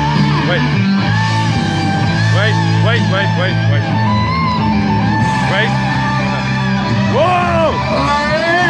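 Hard rock karaoke backing track, electric guitar over steady bass notes, played loud through a small portable speaker.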